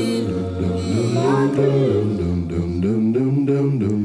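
Slow song sung a cappella: several voices in layered close harmony over low sustained backing voices, with no instruments.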